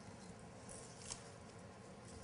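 Faint rustling of fresh dill sprigs being pushed down into a glass jar packed with cucumbers, with a couple of light scratches about a second in.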